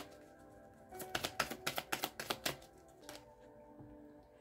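A deck of oracle cards being shuffled by hand: a quick run of sharp, light clicks from about a second in, lasting a second and a half. Soft background music with held notes plays quietly underneath.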